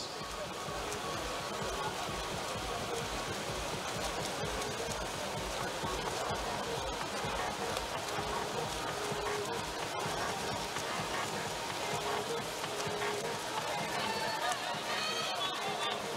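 Steady outdoor pool ambience: water splashing from freestyle swimmers under a background murmur of voices from the pool deck.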